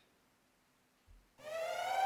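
Near silence, then about two-thirds of the way in an alarm siren starts: one steady tone with many overtones, rising slightly at its start and then holding. It is the alarm raised when the escape is noticed.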